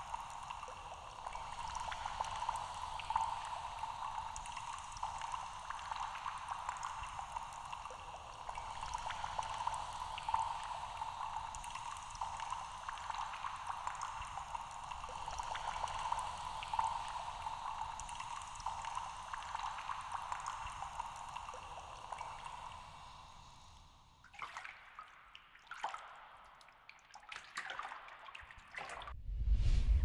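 Steady trickling, bubbling water sound that fades away about 24 seconds in, leaving a few brief scattered sounds near the end.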